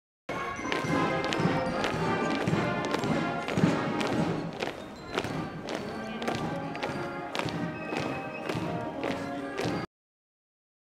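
Military marching band playing a march: brass melody over a steady drum beat of about two strokes a second. It starts suddenly and cuts off abruptly just before the end.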